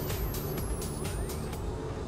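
Sound design of an animated logo sting: a steady low rumble under a quick run of sharp hits, with a thin high tone sliding slowly downward, the whole gently fading.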